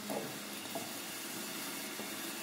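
Quiet, steady hiss of background room tone, with a faint short sound near the start.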